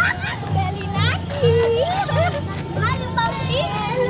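Children shouting and calling out close by, their high voices sliding up and down, over the low, pulsing drums of a marching drum band.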